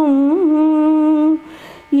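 A woman singing a Tamil devotional song unaccompanied. She holds one long note with a small turn in it, breaks off for a short breath about a second and a half in, and starts the next phrase at the end.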